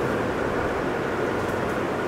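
Steady, even background hiss of the recording's room tone, with no distinct events.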